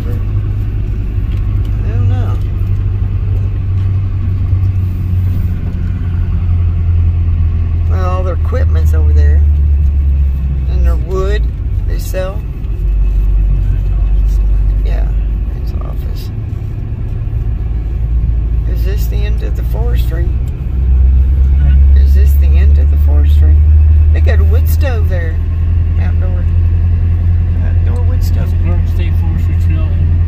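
Low rumble of engine and tyres inside a truck's cabin as it drives slowly, swelling louder twice.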